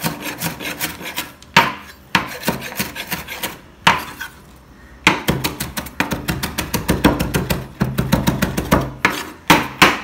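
Chef's knife chopping fresh coriander on a wooden cutting board: quick runs of knife strokes striking the board, with a short pause about four seconds in.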